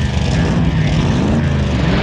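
Dubbed-in car engine sound effects revving, the pitch rising again and again about once a second as one car after another pulls out.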